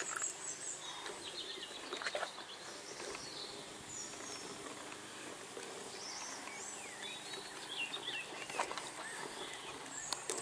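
Faint outdoor background with small birds chirping now and then and a few soft clicks.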